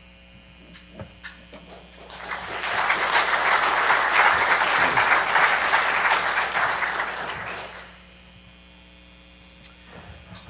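Audience applauding: the clapping swells in about two seconds in, holds for several seconds and dies away well before the end.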